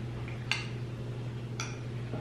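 Metal spoon clicking against a glass dessert bowl while scooping ice cream: two light clicks about a second apart, over a steady low hum.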